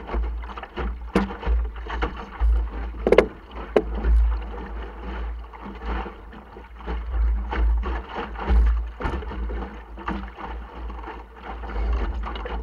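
Optimist sailing dinghy under way: water splashing and slapping against the small hull, with wind gusting on the microphone and scattered knocks from the boat's fittings. The loudest event is a sharp knock about three seconds in.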